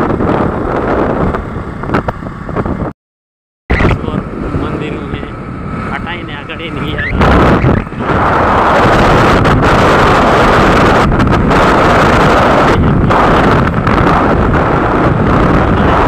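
Wind rushing over the microphone of a moving motorbike, mixed with engine and road noise. It cuts out briefly about three seconds in, then becomes louder and steadier from about eight seconds in.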